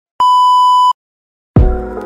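A steady, loud test-tone beep of under a second, the 'technical difficulties' tone that goes with TV colour bars, then a short dead silence. About one and a half seconds in, music starts with a deep hit.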